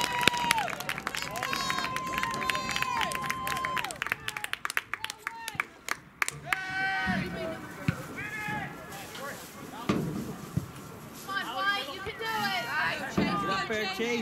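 Men's voices shouting and calling out, with long held calls in the first four seconds over a run of sharp claps or clicks, then more scattered calling later.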